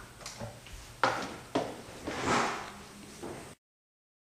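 Kitchen equipment being handled while setting up to strain blended almond milk through a nut milk bag: two sharp knocks, a brief rushing sound, then another light knock, after which the sound cuts off abruptly.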